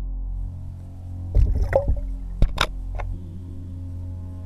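Steady ambient background music, with a few sharp knocks and splashes about halfway through as a largemouth bass is dropped into a boat's livewell.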